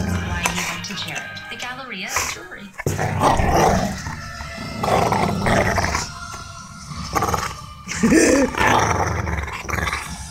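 A Labrador–pit bull mix dog growling in several bouts while holding a chew bone that a person is trying to pull from its mouth: play growling over the bone.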